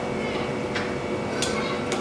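A steel spoon scooping chutney from a small steel bowl, giving three light clinks of metal on metal over a faint steady hum.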